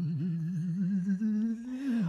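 A voice humming a trombone imitation: a low note with a wide, wavering vibrato for about a second, then a slide up into a higher note that is held until near the end.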